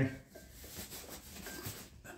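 Faint rustling and light handling noise from a fabric drag-racing parachute pack being lifted and turned in the hands.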